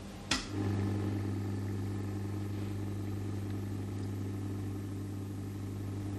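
An embalming machine's pump is switched on with a sharp click, and its electric motor starts about half a second later and runs with a steady hum, building pressure to push embalming fluid into the artery.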